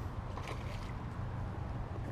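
Faint splashing of a hooked crappie at the water's surface during the fight, over a steady low rumble of wind on the microphone.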